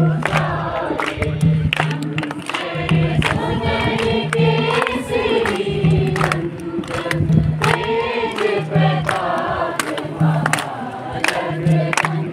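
A group of voices singing a song together, with a low beat repeating about once a second and sharp percussive strikes keeping time.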